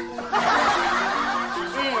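Laughter lasting about a second, starting a moment in.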